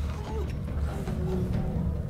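Film soundtrack with a steady low rumble and faint scattered sounds over it.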